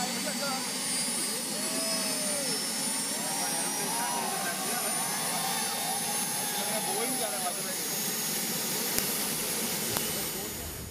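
The MTT Y2K turbine superbike's Rolls-Royce gas-turbine engine running steadily: a rushing roar with several high, steady whining tones over it, and crowd voices around it.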